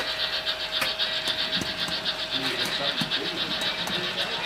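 Sound-equipped On30 model steam locomotive running, its speaker giving a fast, even steam chuff.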